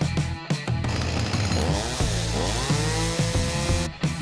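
Stihl two-stroke chainsaw running at high revs, its pitch dipping and climbing back, over background music that gives way to it about a second in. The saw sound cuts off abruptly just before the end.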